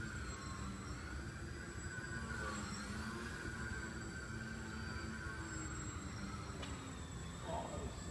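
Twisted Hobbies Crack Laser foam indoor 3D plane flying: its small electric motor and propeller whine steadily, the pitch wavering up and down as the throttle changes.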